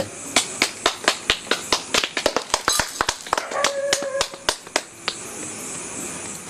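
A rapid, irregular series of sharp clicks, several a second, lasting about five seconds, with a brief steady tone about three and a half seconds in.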